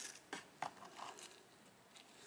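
A few faint light taps and rustles in the first second, from a clear plastic pot lined with tissue paper being handled, then near quiet.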